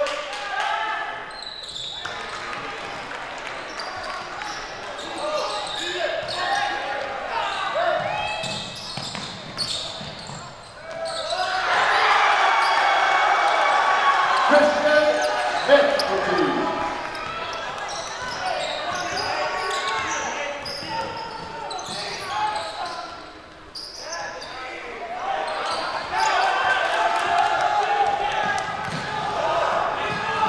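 Basketball gym during a game: a basketball bouncing on the hardwood court under a mix of crowd and player voices echoing in the hall. The voices swell louder from about a third of the way in for several seconds.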